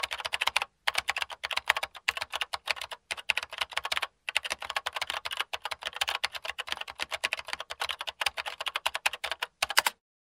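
Rapid keyboard typing clicks, many per second, with short pauses about one second and four seconds in.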